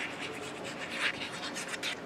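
Plastic applicator tip of a liquid glue bottle scratching across decorative paper as glue is drawn out in zigzag lines, with slightly louder strokes about halfway through and near the end.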